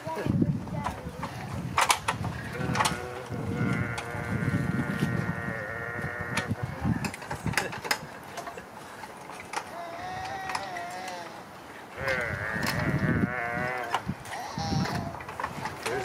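A toddler's long, wavering vocal sounds: drawn-out whining calls, three of them, each held for a second or more. A few sharp knocks come in between.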